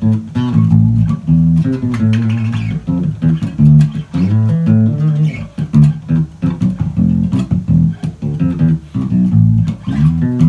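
Electric bass guitar played fingerstyle, unaccompanied, in a slow salsa bassline: a continuous run of plucked low notes that change pitch often, following a 6-2-4-3 chord progression.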